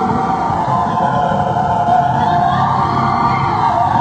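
Live concert recording of a woman singing held notes over a pop band's accompaniment.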